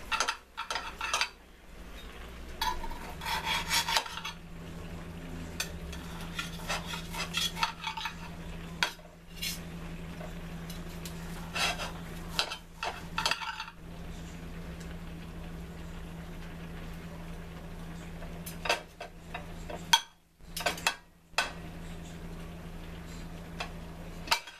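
Knife and fork scraping and clicking against a plate as a roasted turkey breast is cut into small slices, in short irregular strokes. A steady low hum runs underneath.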